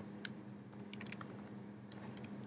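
Keystrokes on a computer keyboard as a shell command is typed: a few separate clicks, with a quick run of keys about a second in.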